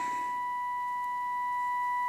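Steady 1 kHz test tone from the Trio 9R-59D receiver's loudspeaker: the set is demodulating a 455 kHz IF test signal modulated with a 1 kHz tone. The tone grows slightly louder in the second half as the IF transformer core is peaked.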